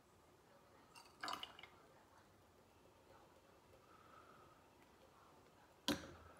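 Mostly near silence, with a short faint clatter about a second in and a single sharp click near the end: a small graduated cylinder knocking on glassware and the tabletop as it is handled and set down after pouring.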